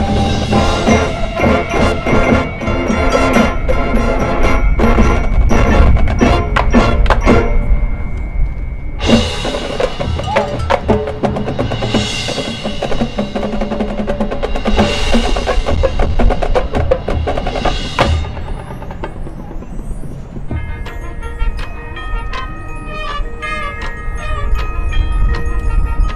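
High school marching band playing its field show: full ensemble with percussion, building to loud swells about every three seconds. Near the end the full band drops away to a lighter passage of mallet percussion from the front ensemble.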